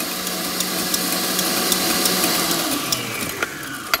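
Electric stand mixer running, its wire whisk beating meringue with the egg yolks just added so they barely combine. About three seconds in the motor's pitch falls as it is switched off and winds down.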